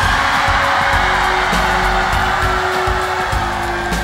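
A large audience cheering and yelling with arms raised, over background music with a steady beat.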